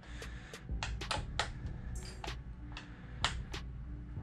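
Scattered small clicks and taps at irregular intervals as a long screw is turned by hand into the hard plastic roof of a Polaris General side-by-side, with fingers and metal knocking against the plastic.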